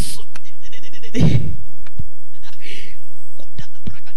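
A woman's voice close to a handheld microphone, without words: short breathy exhalations and a low groan-like "ah" about a second in, with a few small clicks near the end.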